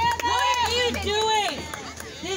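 High-pitched raised voices calling out, one call after another, with no clear words.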